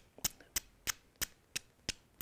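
A hammerstone tapping the edge of a dacite flake: seven sharp clicks at about three a second. Each light blow knocks a small chip off the edge, retouching the flake into a cutting or scraping tool.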